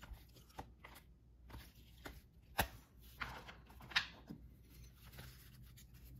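Trading cards being handled and flipped through: faint soft rustles and flicks of card stock, with sharper snaps about two and a half seconds and four seconds in.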